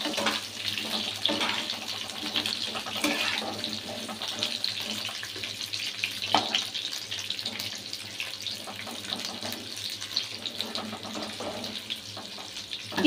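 Peeled pointed gourd (potol) pieces frying in hot oil in a pan: a steady crackling sizzle, with a few sharp clicks of a spatula turning them.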